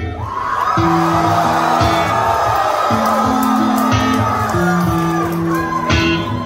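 Live rock band with banjo, electric guitars, drums and keyboard playing a passage without vocals, a bass line stepping between held notes about once a second. It is heard loud from within the crowd in a concert hall.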